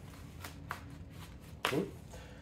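Velcro strap on an Alpinestars SX-1 knee guard being pulled open and handled: a short, faint crackly rasp about half a second in.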